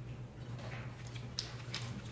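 A person drinking soda from a bottle, with a few faint gulping clicks over a low steady hum.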